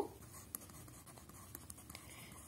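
Faint scratching of a pen writing on notebook paper, with a few light ticks of the pen on the page.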